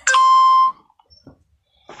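Cartoon 'idea' sound effect for a lightbulb appearing: a single steady electronic tone, held for about two-thirds of a second and then cut off sharply.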